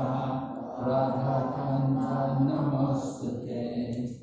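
A man's voice chanting a Sanskrit verse slowly, in long held notes, with a short break about three and a half seconds in.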